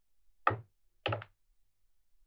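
Small clusters of magnetic balls snapping onto a magnetic-ball structure: two sharp clicks about half a second apart, the second a quick rattle of several clicks.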